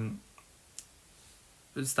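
A man lecturing in Polish pauses. The pause holds one short click about a second in, then his speech resumes near the end.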